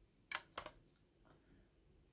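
Two faint, sharp clicks of hard plastic PSA grading slabs being handled, about a third of a second and just over half a second in, with a few fainter knocks later over near silence.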